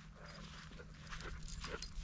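Faint, short sounds from a dog close by, with no bark, over a low steady hum.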